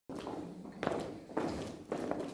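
A man's footsteps walking across a hall: three evenly spaced steps about half a second apart.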